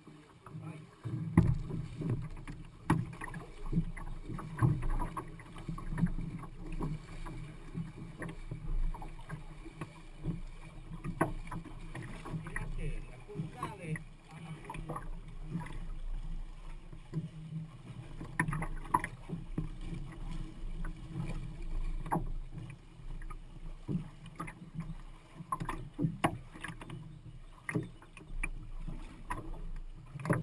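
Water sloshing against a canoe's hull in a shallow, stony river, with frequent short knocks and bumps carried through the hull as the canoe is moved along.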